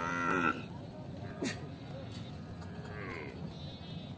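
Cattle mooing: one loud call that ends about half a second in, and a fainter, shorter call about three seconds in, with a sharp click between them.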